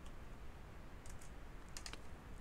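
A few faint clicks of a computer mouse over low room hiss, the last two close together near the end.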